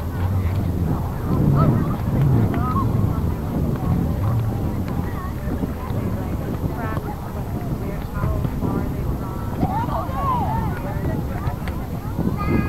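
Indistinct, far-off shouts and calls from soccer players and spectators, over a steady low wind rumble on the microphone. A cluster of higher calls comes near the end.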